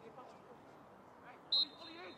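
A referee's whistle blows one short, sharp blast about one and a half seconds in, signalling a free kick to be taken after a foul, over faint distant shouts from players on the pitch.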